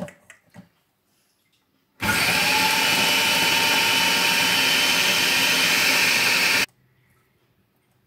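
Electric food processor switched on about two seconds in, running steadily for about four and a half seconds as it blends chickpeas and tahini into hummus, then switched off abruptly.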